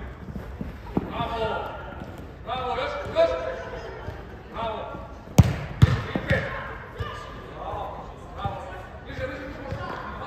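A football being kicked on artificial turf in a large indoor hall: several sharp thuds, the loudest a quick cluster of three about five and a half to six and a half seconds in, echoing in the hall. Voices shout on and off between the kicks.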